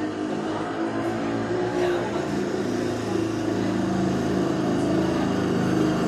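An engine running steadily nearby, slowly growing a little louder, its pitch shifting slightly about halfway through.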